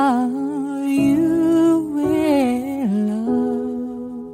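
Slow song: a solo voice sings long, held notes that glide from one pitch to the next over sustained chords.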